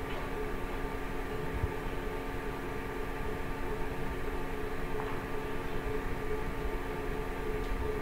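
Steady background hum with a few constant tones over a low rumble.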